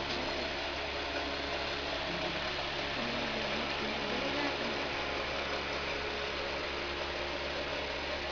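Electric pedestal fan running: a steady motor hum under an even rush of air.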